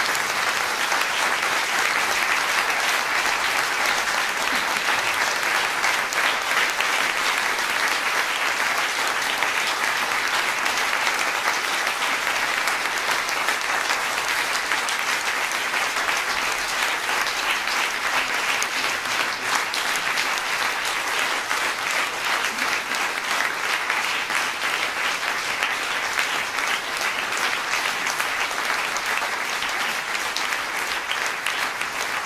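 Concert audience applauding steadily, sustained clapping of a small hall crowd at the end of a piano performance.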